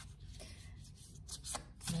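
Divination cards being handled: a few quick, soft taps and rustles of card against card, mostly in the second half.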